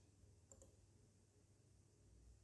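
Near silence with a low steady hum, broken by a faint quick double click about half a second in, like a computer mouse clicking.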